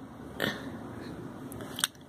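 Steady hiss of falling rain, with a short burst of noise about half a second in and a sharp click near the end.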